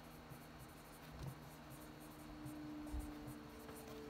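Dry-erase marker writing on a whiteboard: a faint run of short scratchy strokes as letters are drawn.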